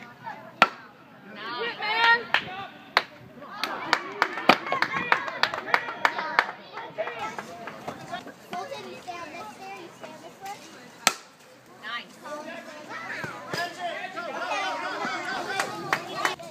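Indistinct chatter and calls from people around a baseball field, with scattered sharp knocks and claps; the loudest knocks come just after the start, about four and a half seconds in and about eleven seconds in.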